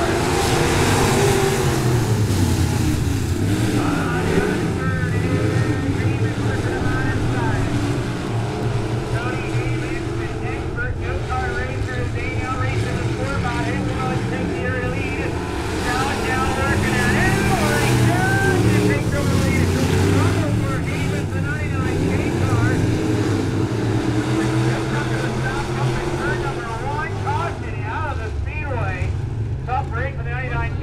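A pack of IMCA Sport Mod dirt-track race cars running together around the oval, their V8 engines blending into one steady drone.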